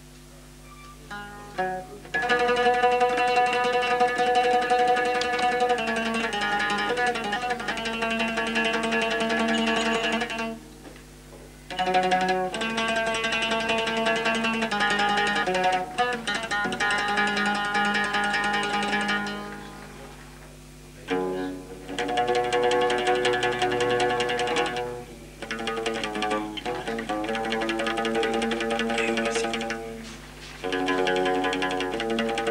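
Solo oud playing runs of plucked notes, with brief pauses about ten and twenty seconds in.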